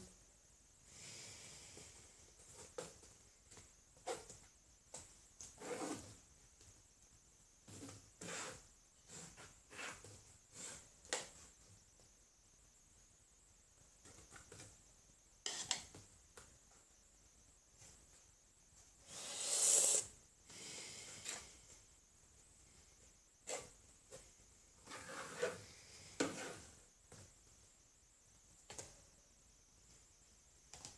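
Faint, scattered taps and rubs of paint handling: a plastic cup knocking and a palette knife scraping wet acrylic paint across a canvas. One louder rasping noise lasts about a second, about twenty seconds in.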